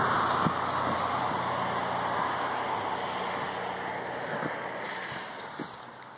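Tyre hiss of a vehicle driving on a wet road, fading steadily as it moves away, with a few faint footsteps.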